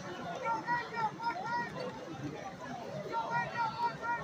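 Voices talking at some distance over a general murmur of crowd chatter.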